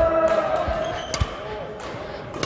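Badminton racket strikes on a shuttlecock in a drive rally, two sharp cracks about a second apart, with footfalls thudding on a wooden court floor.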